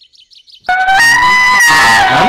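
A loud, held brass horn note, trumpet-like, cuts in suddenly about two-thirds of a second in and sustains, as an added comic sound effect or music sting. Before it there is a brief hush with faint high chirps.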